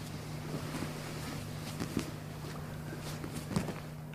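Soft rustling and a few light knocks of two grapplers in gis shifting their weight on the mat, over a steady low hum.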